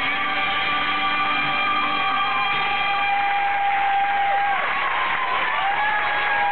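Karaoke backing track and male singer ending a song on long held notes, with the crowd starting to cheer and applaud about halfway through.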